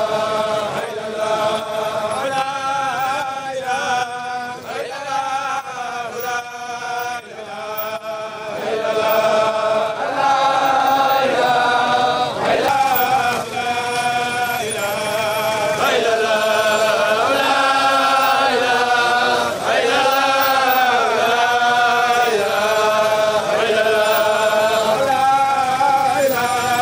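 A crowd of men's voices chanting together in unison, repeating the same short melodic phrase over and over, growing louder about nine seconds in.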